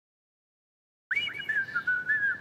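Silence, then about a second in someone starts whistling a light tune in sliding, wavering notes.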